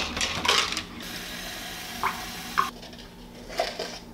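A plastic shaker bottle being shaken, a quick rattling clatter that stops just under a second in. Then a steady hiss with two light clinks, and one more clink near the end.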